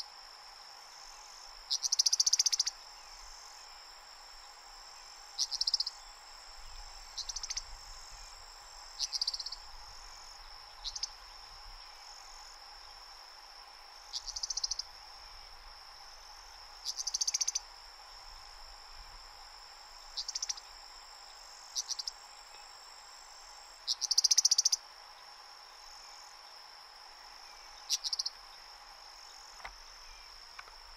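An Eastern Meadowlark giving short, harsh, buzzy call notes, about ten of them at irregular intervals of two to three seconds, with the loudest near the start and about three-quarters of the way through. A steady, high-pitched insect trill runs underneath.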